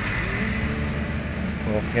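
Steady low background rumble with a man briefly saying "oke" near the end.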